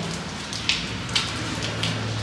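Heavy rainwater splashing and running in a flooded stairwell, a steady wash with three sharp splashy ticks about half a second apart.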